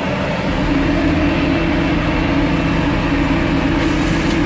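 Tractor engine running steadily, heard from inside its cab, together with a Claas Jaguar 950 forage harvester chopping maize close alongside; a loud, even machinery noise that does not change.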